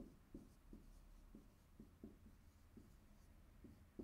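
Dry-erase marker writing on a whiteboard: faint short strokes, about two or three a second, as letters are written.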